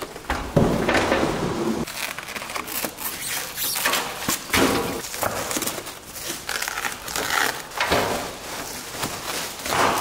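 Unpacking sounds: cardboard and plastic wrapping rustling and crinkling in irregular bursts, with an aluminum trailer-step frame scraping and knocking on a wooden workbench.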